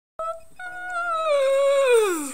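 A man's loud, drawn-out wordless cry, high in pitch. A short note comes first, then a long held one that slides down in pitch near the end.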